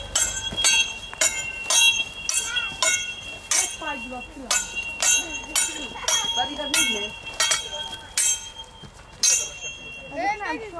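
Steel longswords clashing in a practice bout, blade on blade about once or twice a second, each hit ringing on briefly with a metallic tone. The strikes are a set school drill of cuts and parries.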